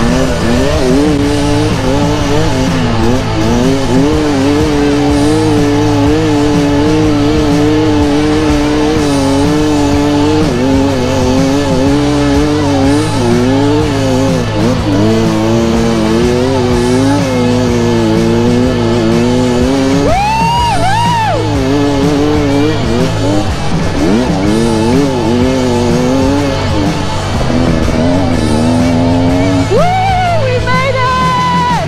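Dirt bike engine revving hard under throttle, its pitch wavering up and down and dropping abruptly several times as it shifts gear, with a sharp rev rising and falling about two thirds in and another near the end.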